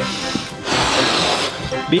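A man blowing air into a rubber balloon to inflate it: two long breathy exhalations, the second starting about half a second in, with background music under them.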